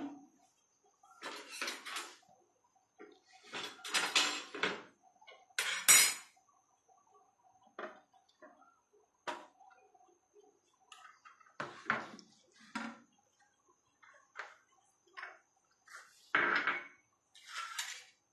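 Intermittent kitchen clatter: utensils, pots and containers being handled and set down on the counter. There are a dozen or so short knocks and rattles, loudest about six seconds in and near the end.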